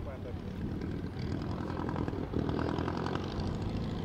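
Engine and propeller drone of a Klemm 35D light monoplane, with its inverted four-cylinder Hirth engine, on landing approach. The drone grows louder as the aircraft nears, from about a second and a half in.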